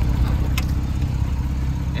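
Porsche 911 Carrera S (991.2) twin-turbo flat-six idling steadily, with a low, even sound.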